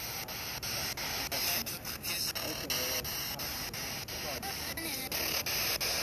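Spirit box sweeping through radio stations: a steady hiss of radio static broken by a click about four times a second, with brief snatches of broadcast voices.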